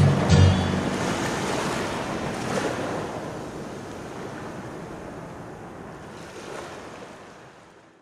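The end of a slowed-down, heavily reverberated band song: a last low note sounds just after the start, then the reverb tail lingers as a hissing wash and fades out.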